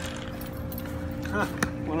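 A bunch of keys jangling with light metallic clinks, over a steady hum.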